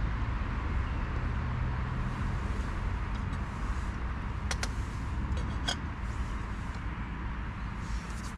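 A metal cooking pot on a camping gas stove knocked twice, sharp clicks about halfway through and a second later, as the lid or spoon is handled, over a steady low background noise.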